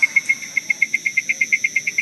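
A cricket chirping in a fast, even pulse, about ten chirps a second.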